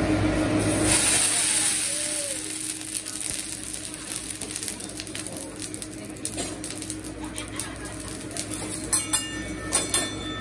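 Hot teppanyaki griddle sizzling loudly after a flare-up on the cooking surface. The hiss is strongest in the first couple of seconds, then settles into a steadier, quieter sizzle. A few sharp metal clicks from the chef's spatula come near the end.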